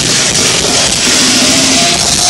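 Heavy metal band playing live at full volume, a dense wall of guitars and drums with a held low note.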